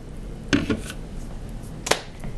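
A container and supplies being handled on a worktop: a short clunk about half a second in and a sharp click near the end.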